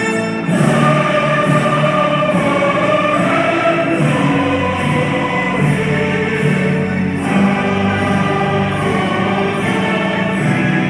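Choral music: a choir singing sustained notes together with an orchestra.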